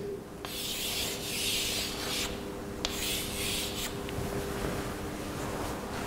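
Chalk drawing on a blackboard: two long, hissing strokes of about a second and a half each in the first four seconds, then fainter, shorter strokes as the ellipses are finished.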